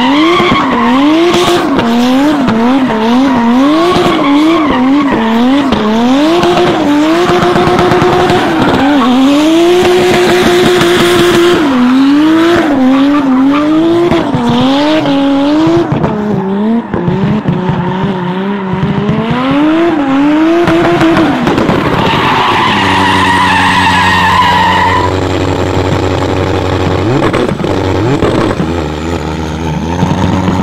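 Subaru WRX STI with a swapped-in turbocharged Toyota 2JZ straight-six, drifting with tyres squealing. Its revs rise and fall about every three-quarters of a second as the throttle is worked, and are held steady for a few seconds about two-thirds of the way through.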